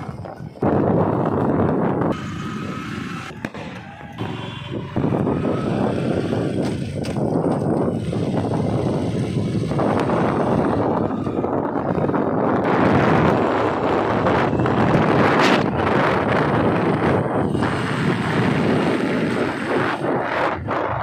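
Loud rushing wind noise on the microphone of a camera being carried along a street, with a few short sharp cracks scattered through it, the sharpest about fifteen seconds in.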